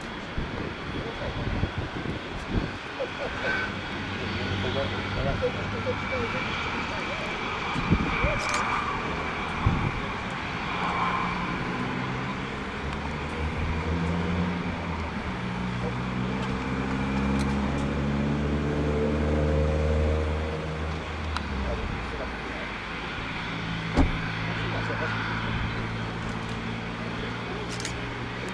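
An engine running with a low rumble; about halfway through, its pitch climbs steadily for several seconds as it speeds up, then holds steady. There is a sharp knock near the end.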